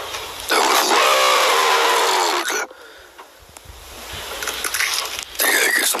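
A raspy, squawking Donald Duck-style voice, unintelligible: one stretch of about two seconds starting about half a second in, and a shorter one near the end.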